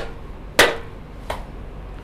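Hand claps: a few sharp single claps between phrases, the loudest about half a second in and a fainter one a little later.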